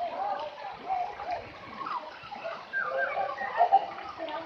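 Indistinct children's voices and calls mixed with water splashing and sloshing in a swimming pool, with a brief louder moment near the end.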